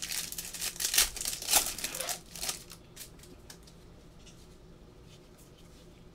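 Foil wrapper of a basketball trading-card pack being opened, crinkling and tearing in a quick run of crackles for about two and a half seconds, then a few faint clicks of the cards being handled.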